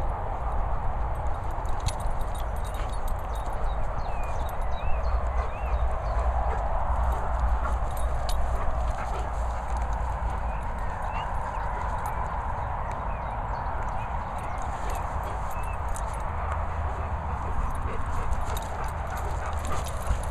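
Outdoor ambience in a grassy field: a steady hiss and low rumble of wind and handling on a handheld phone microphone, with scattered faint bird chirps.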